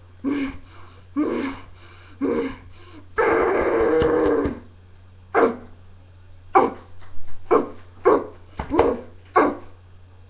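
A girl's voice imitating animal noises: a few short calls, one longer held cry partway through, then a quick run of sharp yelping barks in the second half.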